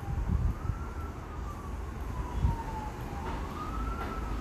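A wailing emergency-vehicle siren, its single tone slowly rising and falling in pitch, over low dull thumps and rumble.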